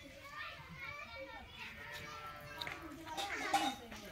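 Children's voices chattering and calling out in the background, with a faint knock or two in the second half.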